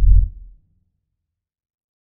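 A single deep, low thump from an edited-in intro sound effect. It is loudest at the very start and fades out within about half a second.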